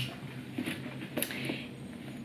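Rummaging in a leather bag: a light click, then a few soft knocks and rustles as items are handled inside it.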